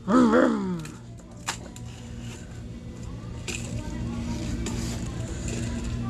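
A short burst of laughter, followed by a steady low hum with a single sharp click about one and a half seconds in.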